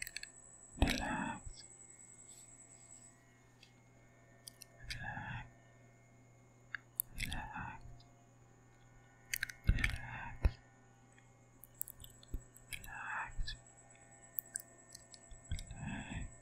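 Close-up ASMR mouth sounds and breathy, unintelligible whispering with the lips right at a microphone: about six short bursts, one every two to three seconds, with wet mouth clicks scattered between them.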